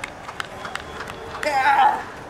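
A few short sharp taps, then a brief loud shout from a person near the end.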